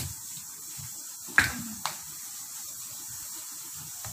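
Two sharp knocks about half a second apart, the first much louder, over a steady hiss.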